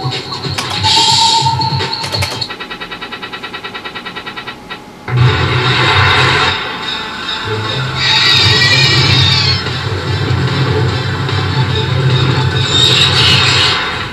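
Electronic music and sound effects from a Bally Wulff 'Baba Jaga' slot machine during its bank-risk gamble feature. A fast pulsing run of about six beeps a second gives way, about five seconds in, to loud, dense effects over a low hum.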